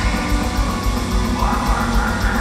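Melodic death metal band playing live through a concert PA, heard from the audience: heavy distorted guitars over fast, even drumming.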